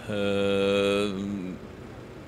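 A man's long, drawn-out hesitation sound, "eeh", held at one steady low pitch for about a second and a half and dipping slightly before it stops.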